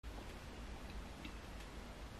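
Quiet room tone: a low steady hiss and hum with a few faint ticks, starting abruptly at an edit.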